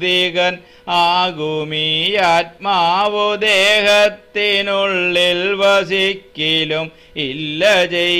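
A man chanting Malayalam verse in a slow, melodic recitation, holding mostly level notes with small rises and falls, in phrases of one to two seconds separated by short pauses.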